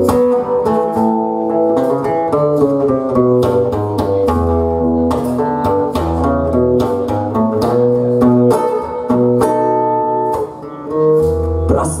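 Acoustic blues: an acoustic guitar picking a bass line and chords under a harmonica cupped against a microphone, playing held chords and notes.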